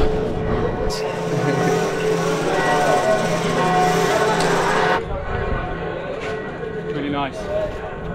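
Church bells ringing, a mix of held pitches that cuts off abruptly about five seconds in, with voices in the background.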